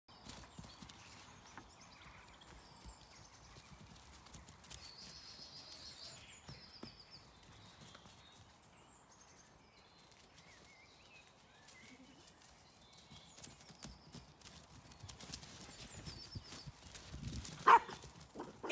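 Lambs' hooves landing on grass as they leap and run, giving quiet scattered soft thuds. Near the end comes a short loud call.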